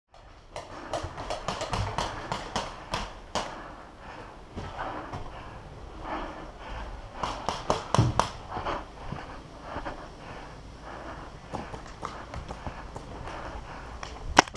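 Paintball markers firing across the field: irregular sharp pops in quick clusters, thickest in the first few seconds and again just before the middle.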